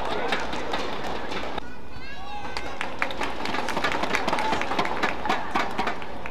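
Badminton rally on an indoor court: sharp racket strikes on the shuttlecock and quick footsteps, with shoe squeaks on the court mat about two seconds in. Strikes and steps come thicker in the second half, over the hum of the hall and voices.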